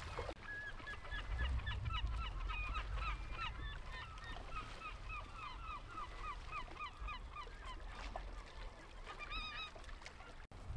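Gulls calling: a long run of short, repeated calls, about three a second, that thins out after about seven seconds, with a final few calls near the end.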